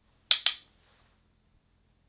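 Two sharp clicks in quick succession about a third of a second in, each dying away at once.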